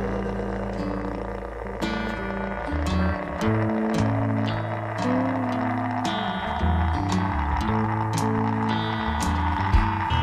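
Instrumental jam section of a country-rock band recording: a walking electric bass line under drums with regular cymbal strikes and sustained guitar tones, no vocals.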